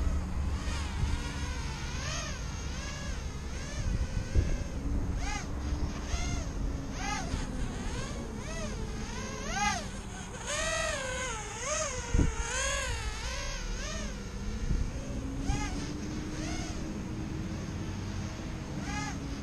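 Micro quadcopter's Racerstar 1306 brushless motors on a 3S battery, whining as it flies, the pitch swooping up and down with each burst of throttle. There is a short thump about two-thirds of the way through.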